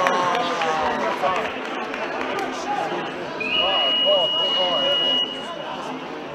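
Electronic game-clock buzzer giving one steady high tone for nearly two seconds, then cutting off, over crowd voices: the end-of-match signal as the clock runs out.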